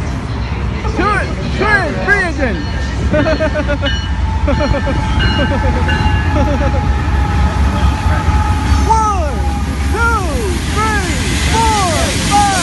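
Steady low rumble of a passenger train in motion, heard from inside the car. Over it, a person's voice makes short, high, rising-and-falling sounds, in clusters about a second in and again near the end.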